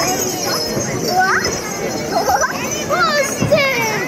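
A group of children calling out and shouting in high voices that overlap, the cries sliding up and down in pitch.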